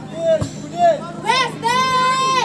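Players shouting on a football pitch: a few short calls and a brief thump about half a second in, then one long, high shout held for nearly a second near the end.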